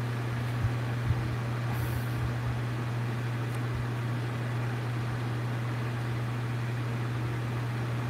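Steady low mechanical hum with a faint even rush of air: room background from a running fan-type appliance. Two light taps, about half a second and a second in.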